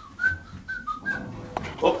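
A person whistling a tune in short separate notes that step up and down, stopping about a second in.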